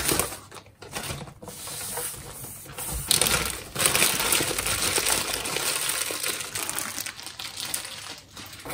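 Plastic mailer bag rustling as it is pulled away, then crumpled and scrunched in the hands from about three seconds in, the loudest and densest crinkling.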